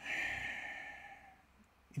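A man sighs: one long breath out that fades away over about a second and a half.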